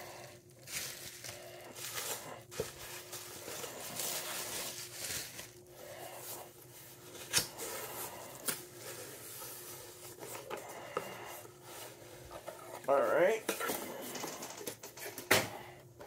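Bubble wrap rustling and crinkling as it is pulled off a package, then a cardboard box being handled and opened, with scattered small clicks and scrapes. A brief murmur of a voice near the end.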